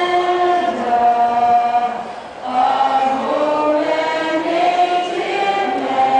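A 15-year-old girl's solo voice singing a national anthem into a handheld microphone, holding long sustained notes, with a brief breath about two seconds in.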